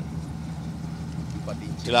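Engine-driven irrigation water pump running steadily, a continuous low hum with no change in speed.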